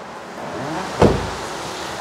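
A Kia Carens car door being shut: one heavy, low thud about a second in, fading quickly.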